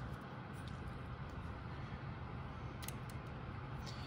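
Low steady room hum with a few faint clicks about three seconds in, from a night-vision monocular and its mount being handled on a workbench.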